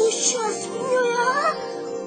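Background music under a high voice making drawn-out, wordless sounds that slide up and down in pitch. A brief shimmering hiss comes near the start.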